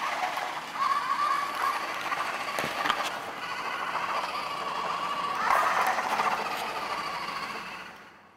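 Small electric motors of a home-built wheeled robot whirring as it drives across a wooden floor: a steady whine with a couple of clicks near the middle and a louder stretch about five and a half seconds in.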